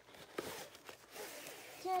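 Plastic packaging rustling and crinkling as a tripod's padded carry bag is pulled out of it, with a short sharp tap about half a second in. A woman starts speaking near the end.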